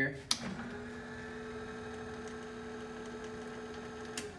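Ledco Digital 42-inch laminator's roller drive running with a steady hum after a click from its controls about a third of a second in.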